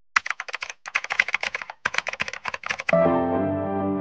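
Keyboard typing sound effect: quick clicks in two runs with a short pause just under two seconds in. Music with sustained tones comes in about three seconds in.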